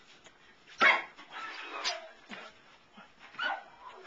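A short-coated Bouvier puppy barking about three times, the first bark the loudest.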